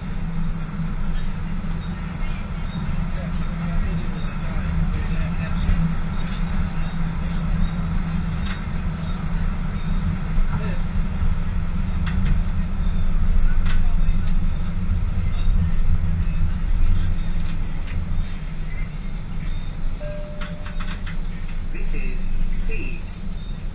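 Tyne and Wear Metro train running along the track, heard from the driver's cab: a steady low rumble that swells for a few seconds midway, with a few sharp clicks and a short tone near the end.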